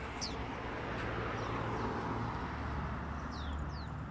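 A small bird chirping several times, each a short, high note sliding downward, over a rushing noise with a low hum that swells through the middle and eases toward the end.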